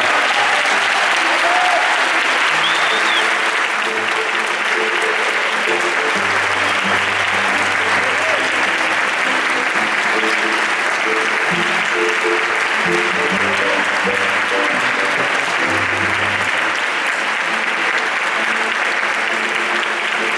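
Large audience applauding steadily. From about four seconds in, music with low held notes plays underneath the clapping.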